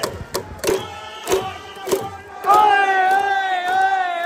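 Hanshin Tigers fans' organised cheering section in the stadium stands: regular drum beats under crowd chanting. About two and a half seconds in, the section holds one long loud note together.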